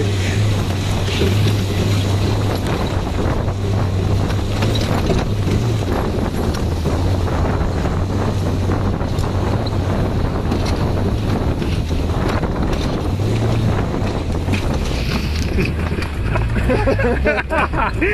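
Off-road buggy engine running steadily under load as it drives over a rough track, with wind on the microphone and repeated knocks and rattles from the jolting vehicle.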